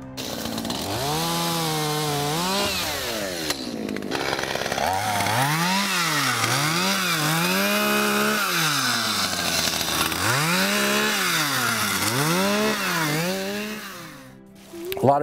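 Two-stroke chainsaw revved up and down again and again, its pitch climbing to full throttle and dropping back, sometimes held at the top for a second or so, as it cuts down bush honeysuckle stems. It starts abruptly and stops just before the end.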